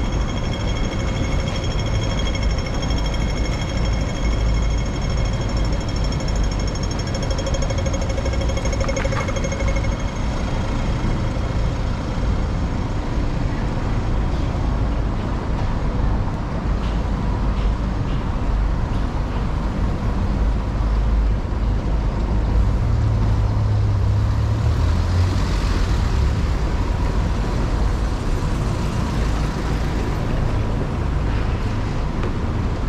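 Busy city road traffic, a steady low rumble of passing vehicles, swelling about three-quarters of the way through as a heavier vehicle goes by. For the first ten seconds or so a pedestrian crossing signal sounds a steady high-pitched tone pattern.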